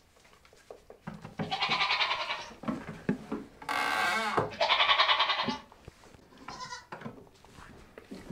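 Goats bleating: three wavering bleats, about a second and a half in, around four seconds in and just after five seconds, the middle one the loudest.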